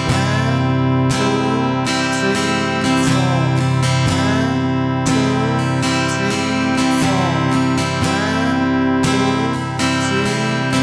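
Steel-string acoustic guitar strummed in a steady, even rhythm pattern of down and up strokes, chords ringing between strokes.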